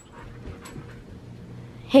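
A pet dog panting faintly.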